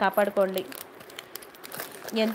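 Thin clear plastic jewellery packets crinkling as they are handled, a light crackly rustle for about a second after the voice stops.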